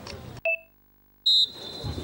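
A short beep, then the sound cuts out to dead silence for most of a second, then a loud, high, steady tone starts abruptly and fades away over about half a second.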